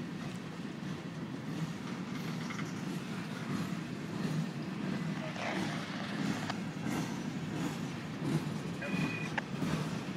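Freight train cars, covered hoppers and tank cars, rolling past on the rails: a steady low rumble of wheels on track with occasional sharp clicks and knocks.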